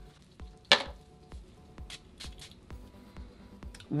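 Glass perfume bottle's spray pump spraying: one sharp short spray about three-quarters of a second in, then a few fainter short puffs around two seconds in. Faint background music underneath.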